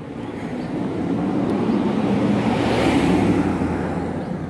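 A low vehicle hum under a rushing noise that swells to a peak about three seconds in and then eases off.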